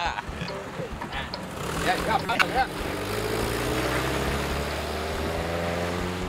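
Voices call out briefly. Then an open-top jeep's engine runs steadily and rises slowly in pitch as it pulls away and speeds up.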